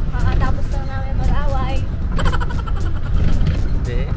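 Steady low rumble of a ride in a moving open golf cart, the motor and wind on the microphone, under voices.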